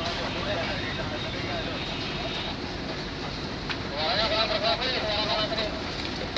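Steady low rumble of a running engine, with people talking in the background from about four seconds in.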